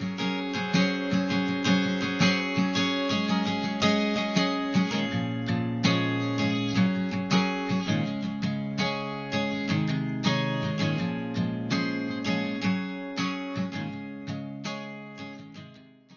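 Acoustic guitar strumming chords in a steady rhythm, fading out near the end.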